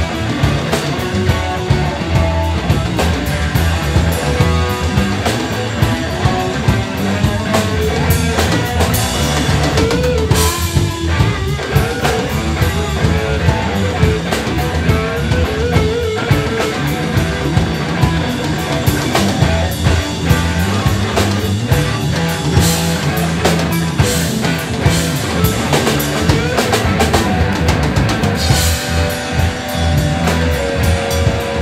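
Live rock-and-roll band playing a Fifties medley: electric guitars, bass, keyboard and drum kit, with a steady driving beat.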